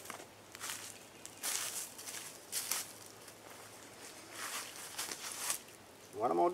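A handful of short rustles as a nylon US Army poncho is pulled across to form a second roof layer, with footsteps in dry leaf litter.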